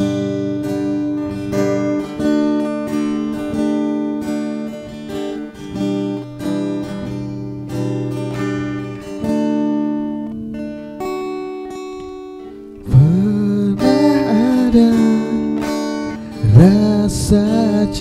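Acoustic guitar playing chords in a steady rhythm, a slow ballad intro. About thirteen seconds in, a man's voice starts singing over the guitar.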